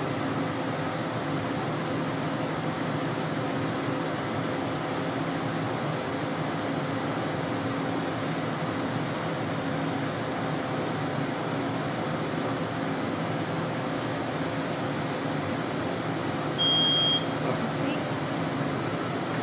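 Steady hum of a LASIK femtosecond laser system and its cooling, with faint steady tones, while the laser cuts the corneal flap; near the end a single high electronic beep sounds for about half a second.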